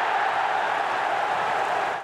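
Football stadium crowd noise: a steady, loud roar of many voices that cuts off sharply at the end.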